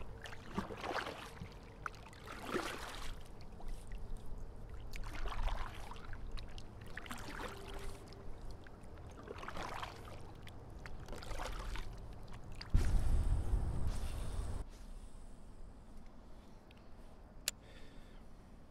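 Kayak paddle strokes in the water: a swish and splash of the blade about every two seconds. Later comes a loud low rumble lasting about two seconds.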